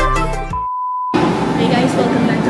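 Upbeat electronic background music cut off by a single steady high beep about half a second long, followed by the murmur of voices and room noise.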